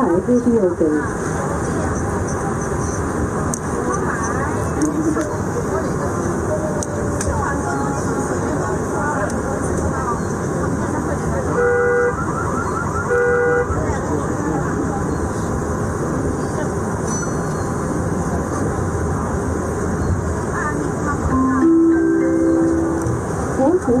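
Inside a metro train carriage running between stations: a steady rumble of the moving train. About halfway through come two short electronic tones a second or so apart, and near the end a short rising chime, the kind that leads into a station announcement.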